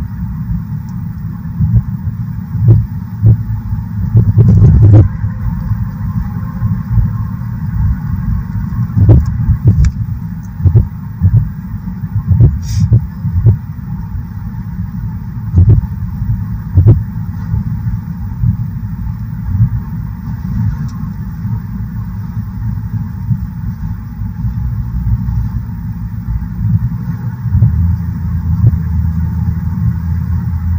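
Car interior road noise while driving at speed: a steady low rumble from the tyres and the road, with irregular knocks and thumps over it.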